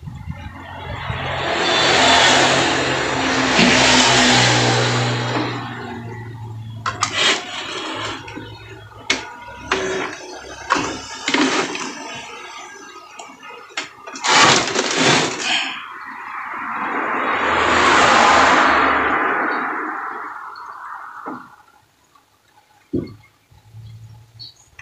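Epson L3210 inkjet printer running its power-on initialisation: two long whirring swells from its internal motor, each rising and fading over several seconds, with a run of mechanical clicks between them. It gets through the cycle without throwing error 000043, a sign the cleaned sensor repair has worked.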